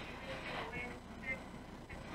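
A pause between spoken sentences: faint room tone with a low steady hum and a few faint traces of a distant voice.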